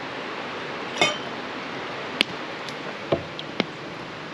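Bottle and measuring cup clinking against a steel tumbler and the table as drinks are measured and poured: one sharp ringing clink a little after two seconds, then a knock and another clink near the end, over a steady background rush.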